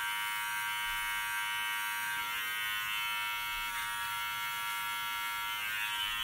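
Wahl Stainless Steel Lithium Ion cordless trimmer running with a steady, high-pitched buzz as its blade cuts the hair along the hairline around the ear.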